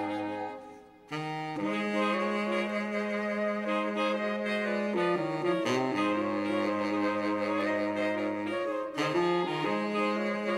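Soprano saxophone playing a slow melody in long held notes, with a short break between phrases about a second in.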